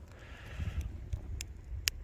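Wood fire burning hard in a metal fire-pit brazier: a low steady rumble with three sharp crackles, the last and loudest near the end.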